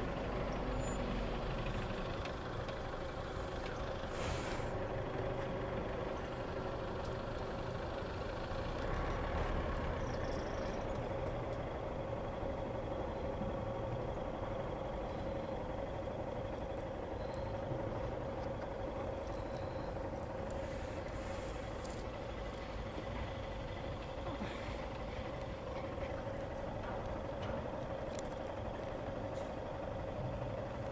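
Steady idling engine hum with a constant drone, with brief hisses about four seconds in and again around twenty-one seconds.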